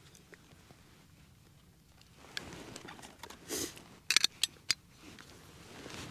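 Faint handling sounds while a Zippo catalytic hand warmer's burner is heated with a lighter flame: a brief rush of noise about three and a half seconds in, then a quick run of sharp clicks.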